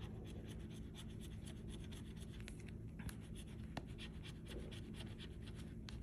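A metal bottle opener scraping the scratch-off coating from a lottery ticket: a quiet, steady run of many short scratching strokes.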